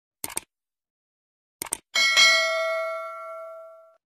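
Subscribe-button animation sound effects: a quick double click, another double click about a second and a half later, then a bell-like notification ding that rings out and fades over about two seconds.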